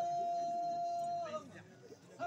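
A man's voice singing one long held note, steady in pitch, that dips and breaks off about a second and a half in.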